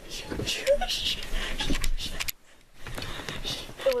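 Hurried rustling, bumps and whispery breathing of people scrambling to hide in the dark, with handling noise on the camera; it drops nearly quiet for a moment about two and a half seconds in.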